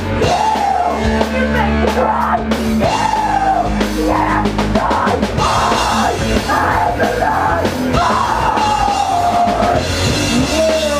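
Hardcore punk band playing live: electric guitar, bass and a drum kit pounding away, with a yelled lead vocal over the top.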